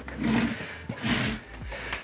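Clothing and seat-cushion rustling as a man shifts and sits back into a padded captain's chair, in two soft rustles: one at the start and one a little after a second in.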